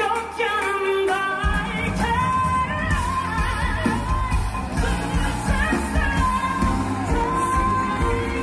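Live Turkish pop band playing with singing. The low end of the band comes in about a second and a half in.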